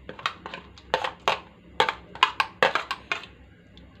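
Light, irregular clicks and taps as minced lemongrass is tipped from a plastic plate into a stainless steel pot over pieces of veal, most of them in the middle of the stretch.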